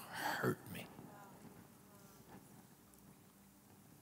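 A man's voice, breathy and close to a whisper, trails off in the first second. Near-quiet room tone with a faint steady hum follows.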